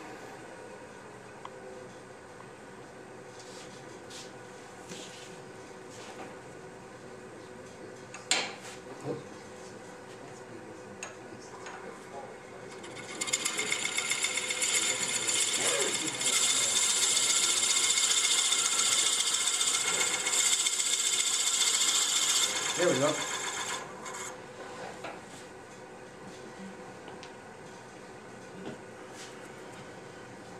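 Wood lathe running with a steady hum. About thirteen seconds in, a 1¼-inch saw-tooth bit in the tailstock drill chuck is fed into the end of the spinning wood blank and bores into it with a loud, steady rasping cut for about ten seconds, then stops cutting as the bit is backed out.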